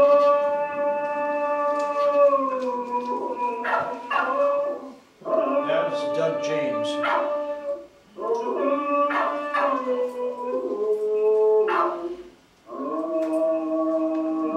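A dog howling in long, held notes that drop in pitch at their ends, several howls with short breaks between them, played back from a video through room speakers.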